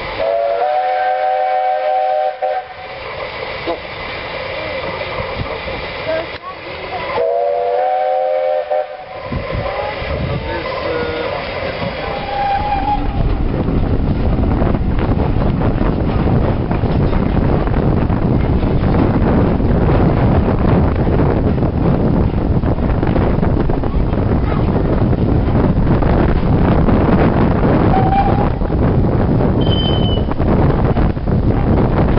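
Two long blasts from a miniature-railway steam locomotive's chime whistle, each about two seconds and several notes sounding together, then a short toot. After about 13 seconds a loud, steady rushing noise with a low rumble takes over, with a brief whistle toot near the end.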